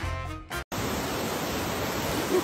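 Music stops abruptly about half a second in. It is followed by the steady rush of a creek pouring over rock ledges.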